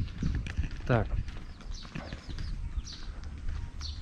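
Footsteps on an asphalt lane, a steady series of short knocks a couple of times a second, with low wind rumble on the microphone.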